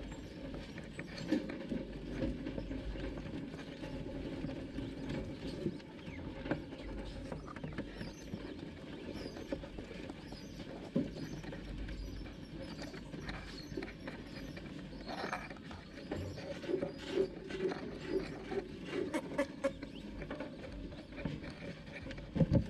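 Naked mole-rats scrabbling and shuffling over wood-shaving bedding and plastic close by: a continuous run of small scratches and taps with occasional sharper clicks.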